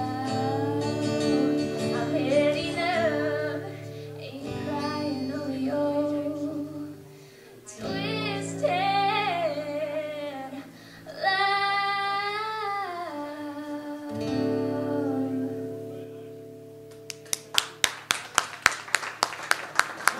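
A woman singing with a strummed acoustic guitar, the sung lines gliding over held guitar chords. In the last few seconds the singing stops and a run of sharp, evenly spaced clicks follows, about four a second.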